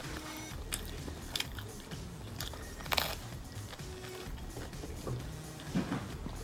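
Chewing a mouthful of pizza close to the microphone, with a few sharp bite and crunch sounds, the loudest about three seconds in.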